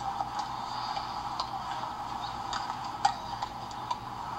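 Tennis balls being struck by racquets and bouncing on the court: a scatter of sharp, irregular pops, the loudest about three seconds in, over a steady background hum.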